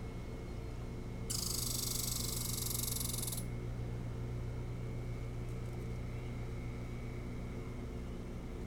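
A steady low hum with a faint thin whine runs throughout. A loud, high-pitched hiss starts abruptly about a second in and cuts off suddenly about two seconds later.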